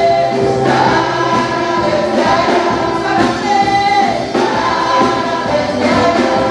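Live gospel worship music: a woman leads the song on microphone while backing singers join in, over a drum kit and electronic keyboard playing a steady beat.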